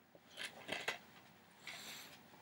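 Faint handling of a plastic DVD case: a few light clicks about half a second in, then a brief rustle near the end.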